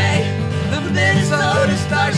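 Acoustic folk-punk music: strummed acoustic guitars with a wavering melody line over them.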